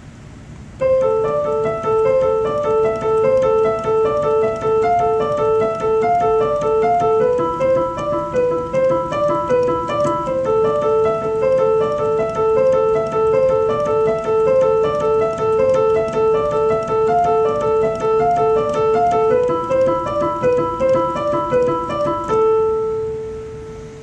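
Piano-voiced keyboard playing a right-hand minor broken-chord pattern through A minor, D minor and E, with upper notes alternating against a repeated lower A. The notes run quick and even, starting about a second in and ending on a held note that fades near the end.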